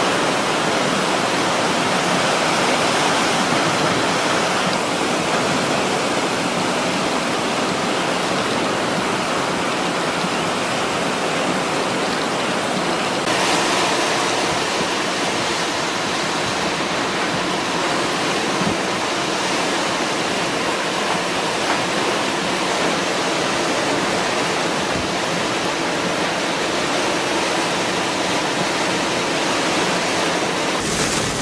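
Heavy hurricane rain and wind, a steady dense rush of noise with no breaks; its tone shifts slightly about thirteen seconds in.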